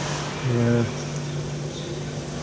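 A steady machine hum over a hiss, as of a fan or compressor running. A brief voiced murmur comes about half a second in.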